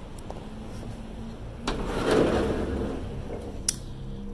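A dumpster lid being opened: a sudden rush of scraping noise about halfway through that fades over a second or so, then a single sharp knock near the end.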